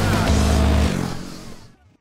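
Background music with the Royal Enfield Guerrilla 450's single-cylinder engine revving under it. Both fade out to silence over the last second.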